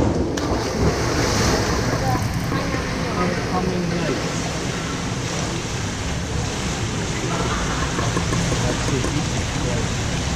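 A diver enters the water from a low platform with a splash about a second in. After it comes the steady, echoing wash of water in an indoor pool hall.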